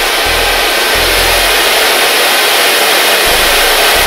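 Handheld hair dryer blowing steadily on the cold setting, aimed at the hairline to set lace-wig glue until it is no longer sticky.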